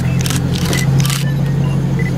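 A steady low mechanical hum runs under a few short, sharp clicks and faint murmuring voices.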